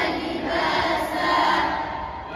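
A group of boys reciting the Quran together in unison, a drawn-out chanted phrase that fades out near the end.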